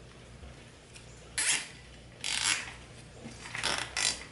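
Nylon zip tie being pulled tight around a metal pipe, ratcheting through its lock in three short pulls about a second apart.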